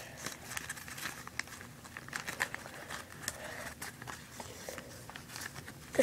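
Origami paper crinkling faintly in small, irregular ticks as the pointed tabs of the last unit are worked into the flaps of a six-piece modular paper cube.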